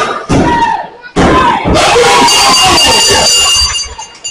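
Wrestling crowd shouting and cheering, with two sharp thuds on the ring mat less than a second apart, typical of a referee's pinfall count. The noise dies down just before the end.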